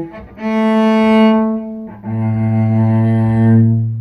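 Solo cello playing two long bowed notes, the second lower than the first.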